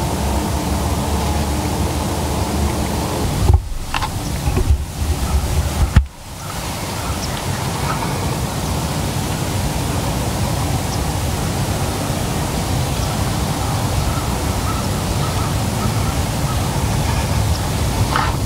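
Steady outdoor hiss, like wind on the microphone, broken by a few sharp knocks and one loud sharp crack about six seconds in, after which the sound drops away briefly and then returns.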